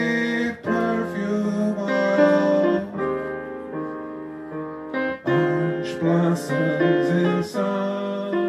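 Male jazz vocalist singing wordless scat phrases that step up and down in pitch, over grand piano accompaniment.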